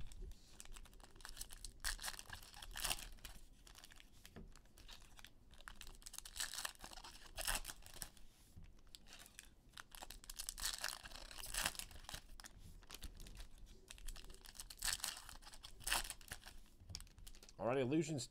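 Crinkly foil wrapper of a basketball trading-card pack being torn open and crumpled by hand: irregular crackling and tearing, with scattered sharper crinkles.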